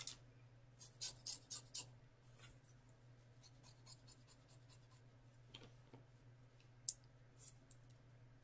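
Scissors snipping through synthetic wig hair while thinning it: a quick run of soft snips about a second in, then scattered single snips, over a faint steady low hum.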